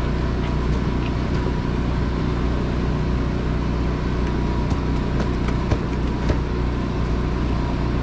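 Steady low hum of running machinery with a faint, even whine over it, plus a couple of small knocks a little past the middle.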